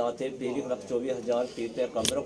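A man's voice chanting a prayer in short, repeated sing-song phrases.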